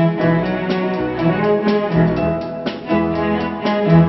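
Instrumental music from a symphony-style band: sustained notes over a held bass line, with a steady beat of about three accented notes a second.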